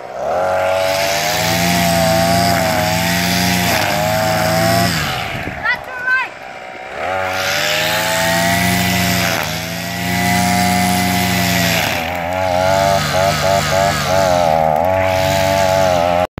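Kamato two-stroke petrol brush cutter running at high revs while cutting grass. Its engine drops back twice, about five and twelve seconds in. Near the end comes a run of quick throttle blips.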